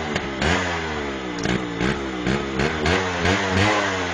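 Motorcycle engine revved again and again, its pitch rising and falling about twice a second.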